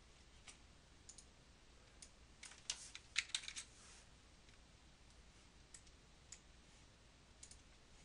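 A quick run of keystrokes on a computer keyboard lasting about a second, starting about two and a half seconds in, with a few single mouse clicks scattered before and after.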